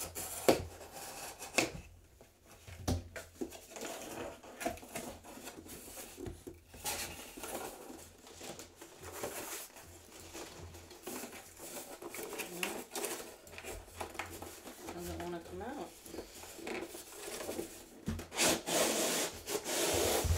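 A blade cutting through the packing tape and cardboard of a shipping case, then cardboard scraping and rubbing as the case is opened and handled. Near the end comes a louder stretch of scraping as a box is slid out of the case.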